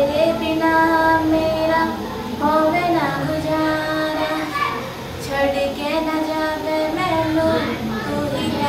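A girl singing a Hindi song solo, holding long notes in phrases broken by short breaths.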